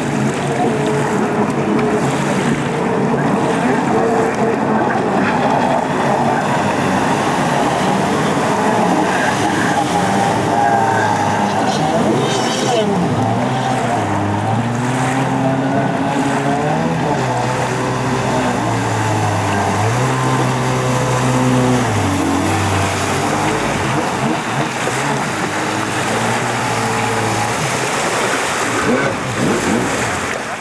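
Stand-up jet ski engines running at the water's edge, their pitch holding and stepping up and down as they are revved, over a steady wash of noise.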